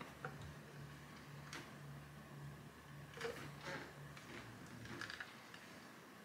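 Faint sounds of a cordless iron pressing and sliding over a quilt section on a wool ironing mat: a few soft, scattered clicks and taps over a low, steady hum.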